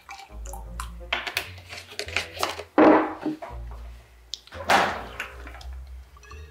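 Background music with a steady bass line, broken by a few sharp knocks; the loudest come about three seconds in and just before five seconds.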